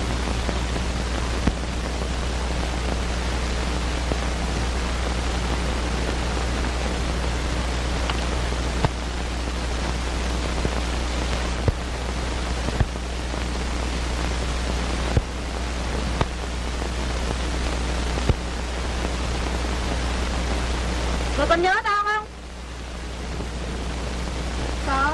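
Steady hiss and low hum of an old film soundtrack, broken by a few sharp clicks at irregular intervals. Near the end a voice briefly cries out with rising pitch.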